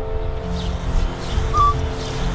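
Minelab E-Trac metal detector in all-metal mode giving a short high chirp about one and a half seconds in, as the coil sweeps over a target that its iron mask had been rejecting, over steady background music.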